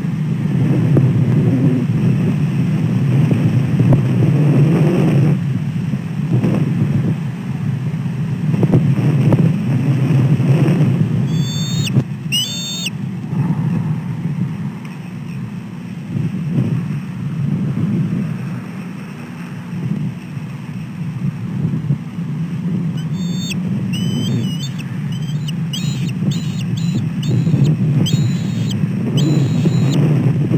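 Wind buffeting the nest camera's microphone as a steady low rumble that rises and falls. Over it, a bald eagle gives high-pitched calls, two about twelve seconds in, then a fast run of chittering notes from about 23 seconds on.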